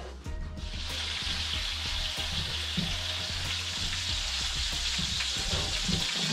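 A large pot of creamy seafood soup heating on the stove as it is brought back to the boil: a steady sizzling hiss that comes in suddenly about half a second in, with small scattered pops and ticks.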